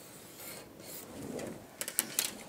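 Pencil scratching along a ruler on pattern paper, then paper rustling and a few sharp clicks near the end as the paper strip and drafting tools are moved on the table.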